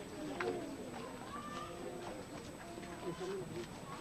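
Indistinct voices of people talking, with a few light clicks or footfalls among them.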